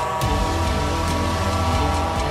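Truck air horn sounding one long steady blast over a low rumble.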